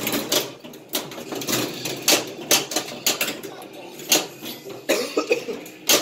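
Pinball machine in play: sharp, irregular clacks of flippers, solenoids and the steel ball striking targets and rails, one to two a second, over the game's electronic sounds.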